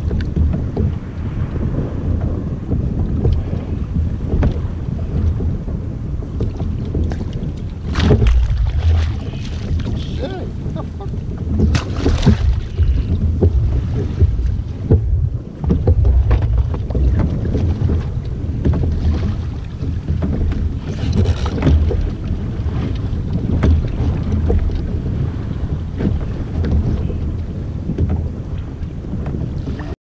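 Wind buffeting the microphone in a heavy, steady low rumble, with choppy water slapping around a kayak. A few sudden, louder hits stand out about a quarter, two fifths and two thirds of the way through.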